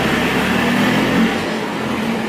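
A motor vehicle's engine running nearby, a steady low rumble that fades about halfway through.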